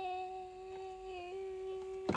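A young woman's voice humming one long held note, which dips slightly in pitch about a second in and then returns.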